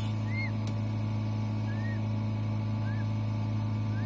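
Peachick peeping from inside its cracked, hatching egg: four short, faint peeps that rise and fall, spread across a few seconds, over a steady low hum.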